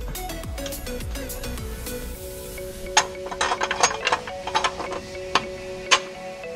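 Steel plate clicking and scraping against the sheet metal of a Fox-body Mustang's shock tower as it is test-fitted by hand, with a run of sharp metal clicks from about halfway through. Background music with held tones plays underneath.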